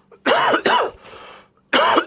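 A man coughing: two sharp coughs close together, then another starting near the end.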